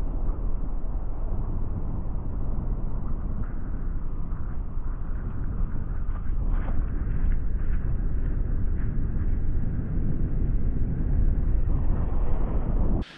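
A car driving slowly on a cobblestone road: a steady low rumble of tyres on the stones, with a few light clicks and rattles in the middle.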